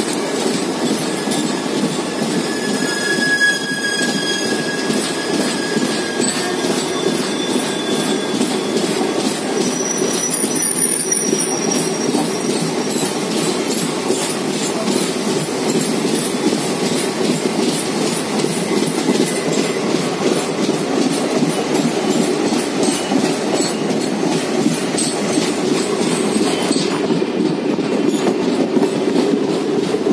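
Indian Railways passenger train running on the rails, heard from on board: a steady loud rumble with a faint regular clickety-clack of the wheels. Thin high wheel squeals sound from about two to eight seconds in and again around ten to twelve seconds.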